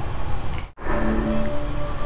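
Music with steady held notes, played through a projector's built-in speaker as the cast Netflix stream starts. It comes in about a second in, after a short break in the sound.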